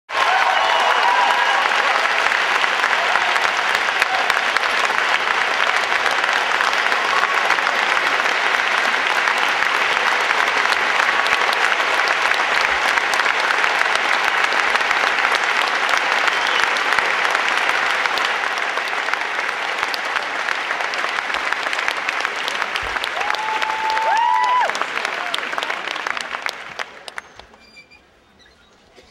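A large audience applauding steadily, with a few held cheering calls rising above it, one longer near the end. The applause dies away over the last couple of seconds.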